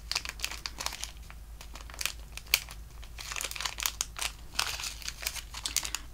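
Thin clear plastic bag crinkling in quick, irregular crackles as hands pull it open and handle the small charm inside.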